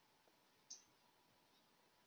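Near silence with two faint, short clicks of a computer mouse, one right at the start and one about two-thirds of a second in.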